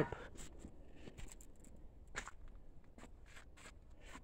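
A few faint, scattered footsteps and scuffs over a quiet outdoor background.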